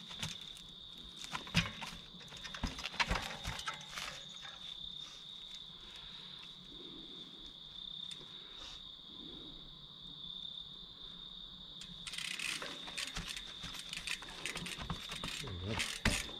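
Steady high-pitched insect chirring from the woods, with sharp knocks and clicks from a trials bike hopping and landing on rock, the loudest about one and a half and three seconds in.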